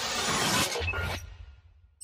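Sound effect of an animated logo intro: a loud, noisy crash that cuts away about a second in, leaving a low rumble that fades nearly out.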